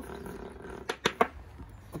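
A child's hand drill being worked into a small log: three quick sharp clicks about a second in, as the drilling of the antler holes finishes.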